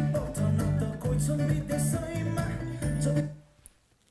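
Electric guitar playing the intro phrase of a song over backing music with bass and percussion. It stops suddenly about three and a half seconds in.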